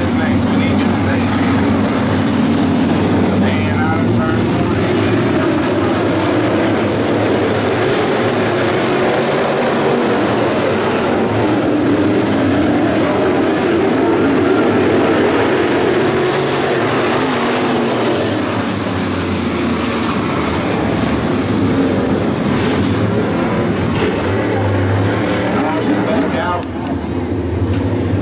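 A field of 602 crate late model dirt cars with GM 602 crate V8 engines running together around the track, a steady, continuous engine sound.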